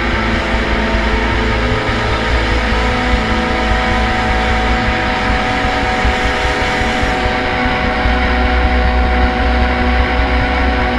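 Live rock band's electric guitars holding a loud, sustained drone of many steady tones over a deep low rumble, with no beat. It swells slightly near the end.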